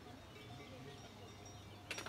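Faint outdoor ambience with distant cowbells clinking now and then, and a short knock near the end.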